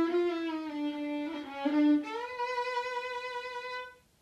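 Violin played with a bow: a few lower notes stepping downward, then one long, steady higher note that cuts off just before the end.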